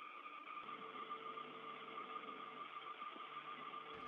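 Faint steady hiss with a thin constant hum tone from an open space-to-ground radio channel between transmissions; a lower hum joins about half a second in.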